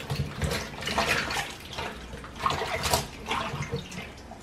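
Hands washing cut eggplant pieces in a bowl of water, with irregular splashing and sloshing as the pieces are lifted and rubbed.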